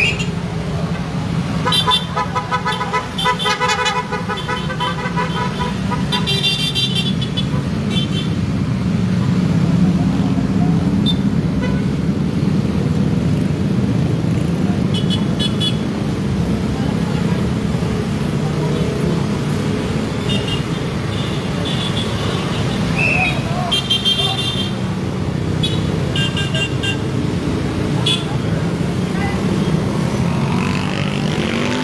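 Vehicle horns honking in clusters of short repeated toots, a few seconds in, again around six seconds, and several times in the last third, over a steady rumble of engines and road noise from the moving motorcade.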